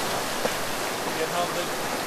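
Steady rushing of wind and sea water around a sailing yacht moving fast through rough water.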